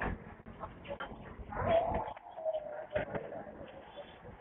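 A bird calling, with a drawn-out call a little under halfway through, over street background noise and a few short clicks.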